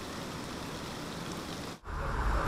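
Steady, even hiss of outdoor background noise that cuts out briefly near the end.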